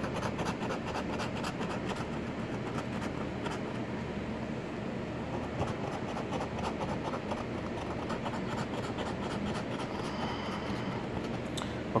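A coin scraping the coating off a lottery scratch-off ticket: quick, continuous back-and-forth scratching strokes.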